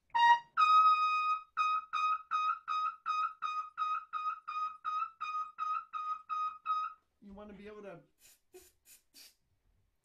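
Trumpet playing a high note: a short note, then one held note, then a long string of evenly tongued short notes on the same pitch, about three a second, heard over a video call. A brief voice and a few clicks follow near the end.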